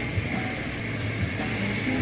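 Vegetables sizzling steadily in a hot wok as they are stirred, with soft background music.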